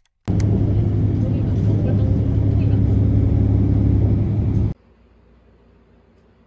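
A loud, steady low rumble with a steady hum in it, like a vehicle running, that starts just after the beginning and cuts off suddenly about three-quarters of the way through, leaving faint room tone.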